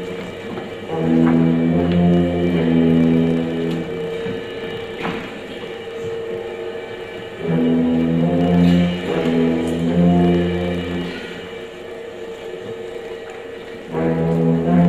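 School concert band playing a medley of monster-movie themes: full wind band in held chords that swell loudly twice, about a second in and again about halfway through, with softer sustained notes between.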